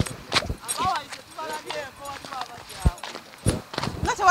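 Several people's voices calling out, mixed with irregular sharp knocks and steps on rough, rubbly ground.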